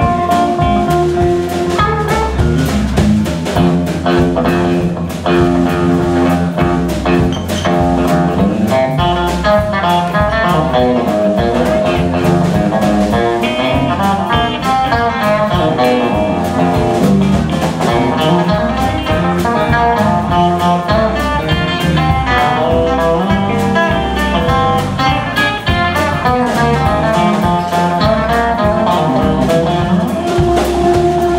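Live electric blues band playing an instrumental break: electric guitar lead lines of quick, changing notes over a steady drum kit beat.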